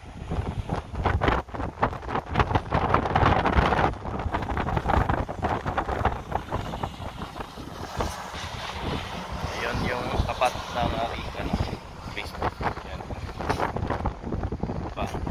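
Wind buffeting a handheld phone's microphone in irregular gusts, a low rumble that is strongest in the first few seconds.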